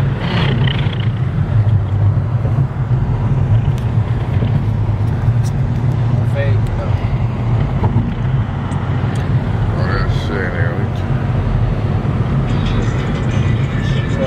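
Steady low rumble of a car driving at speed, heard from inside the cabin, with brief faint voices now and then.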